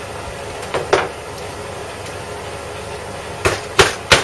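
Hammer driving an eight-penny nail into a wooden workbench: two blows about a second in, then two more near the end.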